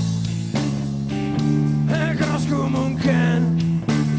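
Live rock band playing: guitars and bass holding sustained chords under a male lead vocal, who sings a line about two seconds in and again shortly after.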